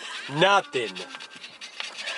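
Scratch-off lottery tickets being scratched, a run of quick, faint rasping strokes across the card's coating. A short vocal sound comes about half a second in.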